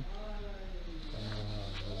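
A man's drawn-out hesitation sound, a long 'ehh' held through the whole stretch, dipping slightly in pitch in the first second and then held low and steady.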